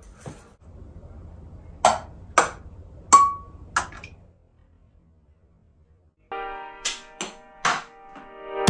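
A ping pong ball clicking sharply four times on hard surfaces about half a second apart, the third hit ringing briefly like glass. After a short silence, music with held chords and a few sharp hits comes in near the end.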